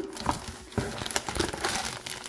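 Clear plastic bag crinkling and rustling as a bottle inside it is lifted out of a cardboard box, with a few light handling clicks.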